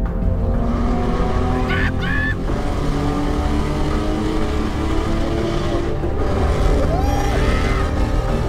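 A car engine mixed under background music, with short rising pitch sweeps about two seconds in and again near the end.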